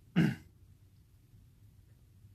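A man clears his throat once, a single short, sharp burst near the start.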